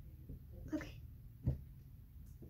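A short spoken "okay", then a single dull thump about a second and a half in, the loudest sound here.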